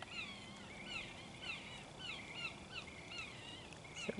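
A run of short, high chirping calls, each a quick rising-and-falling note, repeated several times a second at a low level.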